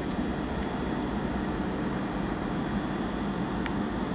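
Steady whir of room ventilation such as a fan or air conditioner, with a few faint ticks, the clearest near the end.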